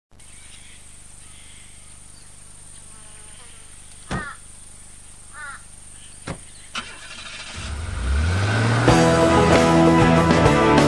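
Quiet outdoor ambience with a couple of short chirps and a few sharp knocks, then a vintage ute's engine starting with a low sound that rises in pitch about seven and a half seconds in. Band music with guitar comes in about a second later and covers it.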